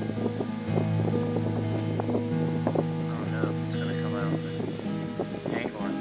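Acoustic guitar music with long held notes.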